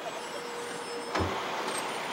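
Steady outdoor traffic noise with a faint hum, and one soft low thump a little past a second in.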